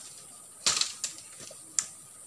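Dry leaves and twigs crackling and snapping as someone pushes through forest undergrowth: a few sharp crackles, about a third of the way in, just past halfway and near the end, over a steady high hiss.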